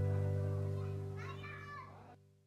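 The last acoustic guitar chord of a background song ringing out and fading away. In the second half a child's voice is briefly heard over it.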